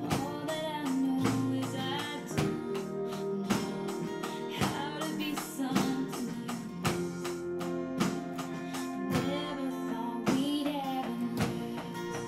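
Acoustic guitar and drum kit playing a song together: strummed guitar chords under regular drum and cymbal hits, with a sung melody over them.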